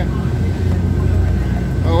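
Cruise boat's engine running steadily under way, a loud low drone heard inside the cabin, with a faint steady whine above it.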